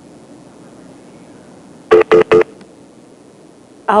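Three short electronic telephone beeps in quick succession about two seconds in, the tone of a call disconnecting: the caller has hung up.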